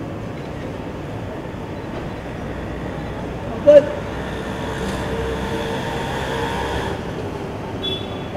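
Steady hum of idling car engines, which grows a little and carries a held tone through the middle seconds. A single short shouted call cuts in just before halfway.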